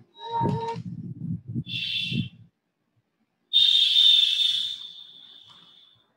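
A high, whistle-like tone that starts suddenly about halfway through and fades away over about two seconds. It comes after a short high burst and some low rumbling.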